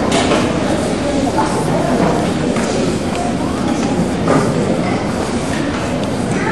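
Audience chatter: many voices talking at once, a steady babble with no single voice standing out.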